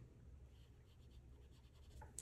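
Faint, soft rubbing of an eraser wiping across a whiteboard, over a low steady hum.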